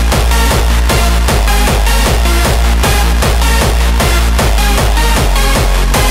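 Hardstyle dance music from a DJ mix: a hard kick drum with a falling pitch on every beat, about two and a half a second (around 150 bpm), over a heavy sustained bass and repeating synth notes.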